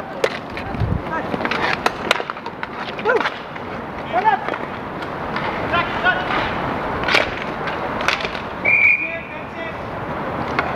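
Roller hockey in play: inline skate wheels rolling and scraping on the rink surface, with sharp clacks of sticks and knocks against the boards, and distant shouts from players. A brief high whistle blast sounds near the end.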